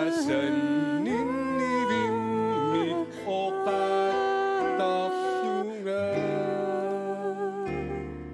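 A single voice singing a melody in long held notes over instrumental accompaniment with bass notes, stopping shortly before the end.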